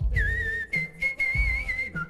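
A whistled melody in a hip-hop track: two held, slightly wavering high notes, the second a little higher and longer than the first, over the beat's bass drum.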